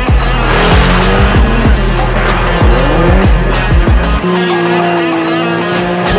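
Drift car sliding with its engine revving hard and its tyres squealing, mixed under loud background music. From about four seconds in the music's deep bass drops out and a steady, high held note carries on.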